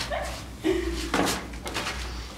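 Short wordless voice sounds in a narrow stone tunnel, mixed with rustling and handling noise as people move through.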